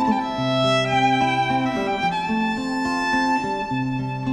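Violin playing a melody of held notes over acoustic guitar accompaniment.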